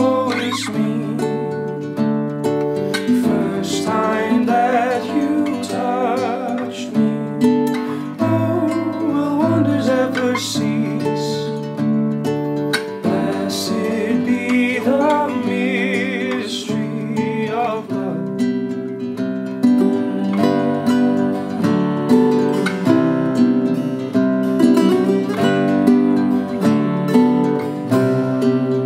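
Nylon-string classical guitar fingerpicked steadily, with a man singing over it for roughly the first two-thirds; after that the guitar plays on alone.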